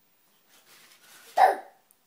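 A baby's laughter: faint breathy sounds, then one short, loud burst of laughter about a second and a half in.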